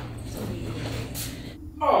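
Quiet room tone with a low steady hum, then near the end a startled "oh" from a voice, falling in pitch.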